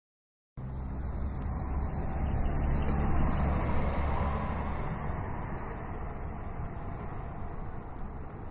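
Motor vehicle engine rumble with road noise. It starts suddenly, swells to its loudest about three seconds in, then slowly fades, like a vehicle going by.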